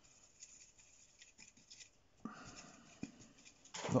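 A watercolour brush rubbing and swirling in wet paint in a plastic palette well as colours are mixed: a faint, scratchy rubbing with small clicks.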